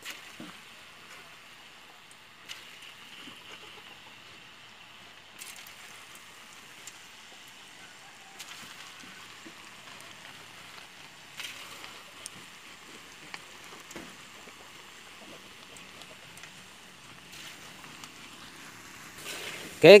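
Battered chicken meatball mixture deep-frying in hot oil in a wok: a faint, steady sizzle and crackle that swells at times as more batter goes in, with a few faint clicks.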